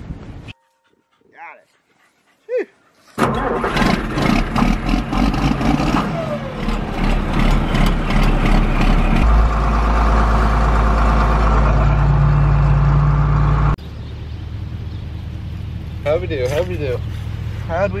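Farm tractor engine running, heard from the operator's cab with rattling, then throttled up about nine seconds in to a loud steady drone that cuts off suddenly near fourteen seconds.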